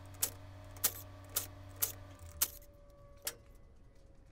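Small metal parts clinking, about six light clicks spaced roughly half a second apart, as the nuts and washers come off the cylinder head studs and the aluminium head is handled for lifting off the KX250 engine.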